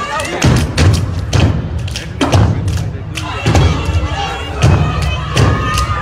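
Step team stomping on a stage, heavy thumps roughly twice a second in an uneven rhythm, with music and voices underneath.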